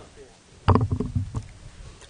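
Low background, then a brief cluster of muffled voice sounds and small knocks close to the microphone about a second in.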